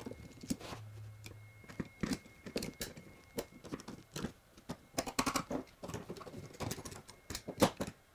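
Small hand tools clicking and tapping on plywood while screws are driven in by hand to fasten a router template to a plywood blank: a faint, irregular run of light clicks.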